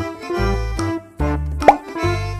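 Bouncy children's background music with a steady bass line. Near the end a single short rising plop, the loudest sound here, as the egg is opened.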